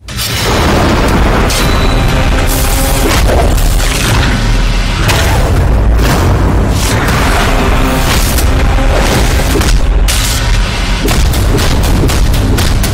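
Loud action-film soundtrack: dramatic music with heavy booming hits and impacts, starting abruptly and running densely throughout.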